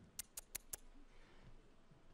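Near silence, with four quick faint clicks in the first second.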